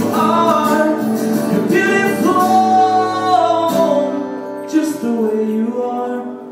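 A man singing with an acoustic guitar in a live performance; the accompanying chord changes about two thirds of the way through.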